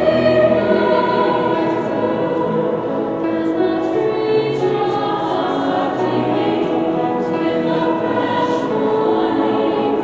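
Mixed high school choir singing in a large stone hall, moving through long held chords at an even level.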